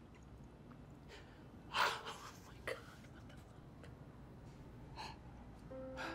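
A woman's distressed breathing: one sharp gasp about two seconds in, with a few shorter, softer breaths around it.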